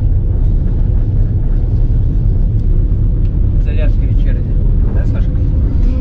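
Steady low rumble of a moving passenger train, heard from inside the carriage corridor, with a brief faint voice about four seconds in.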